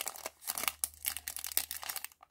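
Thin clear plastic bag crinkling as it is handled and pulled open by hand: a quick, irregular run of crackles.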